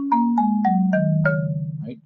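Marimba played with a yarn mallet: six notes struck one after another on the front-row (natural) bars, stepping down in pitch about four a second, each note ringing on into the next.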